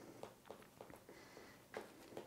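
Near silence with a few faint clicks and scrapes of a knife spreading mustard on a bread bun, the clearest one near the end.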